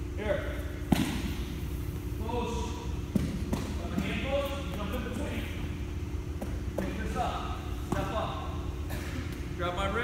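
Several sharp thuds of bodies and hands on a foam wrestling mat as two wrestlers grapple, the loudest about a second in, over indistinct voices and a steady low hum.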